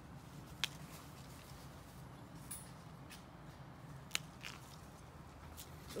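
Faint rustling of jujube leaves and branches being handled as fruit is picked by hand. A few short, sharp clicks are heard, most clearly about half a second in and about four seconds in.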